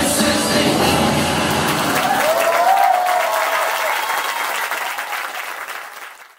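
Dance music stops about two seconds in, giving way to an audience applauding with a cheer, which fades out near the end.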